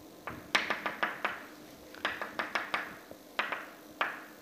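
Chalk tapping sharply against a blackboard in quick clusters of clicks, as dots are drawn one after another.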